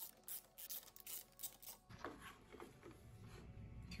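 Faint clicks and small scrapes of a 3 mm Allen key working the screws of a plastic side cover and lifting the cover off, several light ticks in the first couple of seconds.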